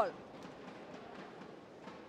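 Low, steady sports-hall ambience with a couple of faint knocks, one near the end, right after the tail of a loud shout cuts off at the start.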